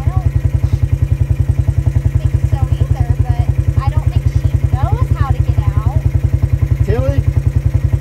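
A small engine idling, a loud steady low throb of about ten beats a second, with faint voices around five and seven seconds in.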